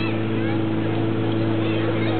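Portable fire pump engine running flat out with a steady drone, charging the hose lines just before water reaches the nozzles. People shout over it.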